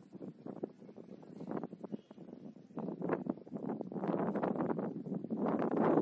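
Wind buffeting the microphone: a rough, gusty rumble that is low at first and grows stronger from about halfway, loudest near the end.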